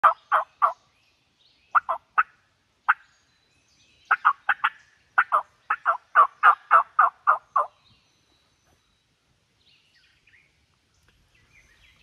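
Hen turkey yelps and cutts made on a mouth call. The short, sharp notes come in quick groups, then a longer run of about a dozen that ends about two-thirds of the way through. No gobble answers them.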